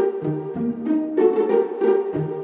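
Background music: a tune of short, evenly paced notes, about three a second, over a low line that steps up and down.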